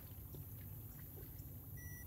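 Quiet open-air background with a steady low rumble. Near the end, a short high electronic beep from the digital hanging scale, around when it locks the fish's weight.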